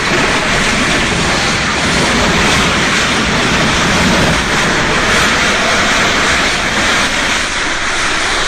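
A multi-storey house collapsing: a loud, continuous rush of falling masonry and debris that holds steady throughout.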